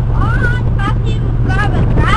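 A boat's engine running with a steady low drone, with people's voices talking over it in short snatches.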